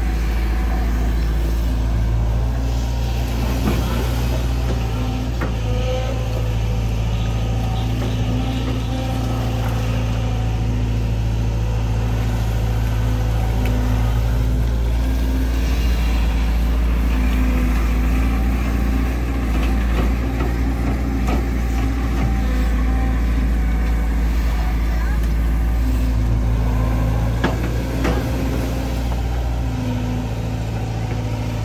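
Diesel engine of a Sumitomo SH long-reach excavator running steadily under working load as the arm swings, dumps mud and reaches back into the river.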